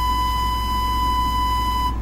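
A steady electronic beep tone, like a test tone, played from a VHS tape on a TV/VCR over a blank white screen. It holds one high pitch for nearly two seconds and cuts off just before the picture turns to static, with a low hum underneath.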